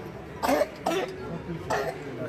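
A person coughing three short times, the first the loudest, over low background talk.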